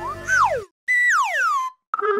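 Cartoon sound effects: a short rising-and-falling glide, then a held high tone that slides steeply down, over background music that cuts off about half a second in.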